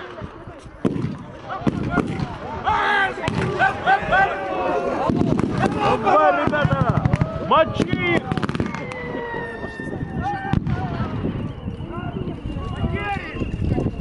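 Scattered blank rifle shots cracking at irregular intervals, mixed with many men shouting.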